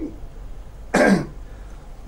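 A person gives one short throat-clearing cough about a second in.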